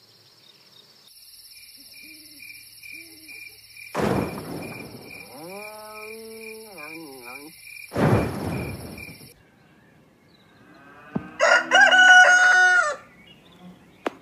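Cartoon sound effects over a steady high-pitched tone: two sudden hits about four seconds apart with a wavering pitched call between them, then a loud bird-like call ending in a long held note near the end.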